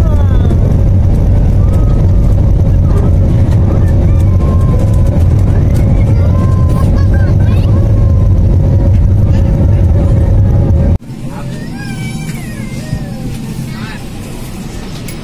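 Jet airliner noise inside the cabin during the takeoff climb: a loud, steady low rumble with a steady whine. It cuts off suddenly about eleven seconds in, giving way to quieter cabin sound with passengers' voices.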